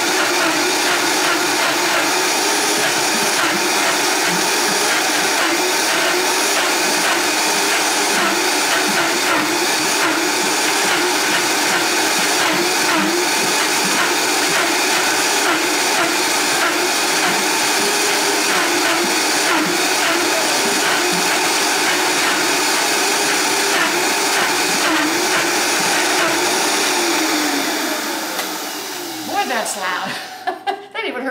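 Vitamix blender motor running steadily, churning a thick cashew-and-date cream with the tamper pressed down into it. A few seconds before the end the motor winds down with a falling whine and stops.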